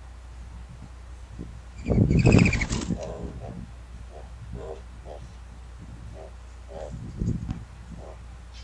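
A mourning dove landing at the nest about two seconds in, with a loud flurry of wingbeats. Softer scuffling in the nest straw follows, with a low thump near the end.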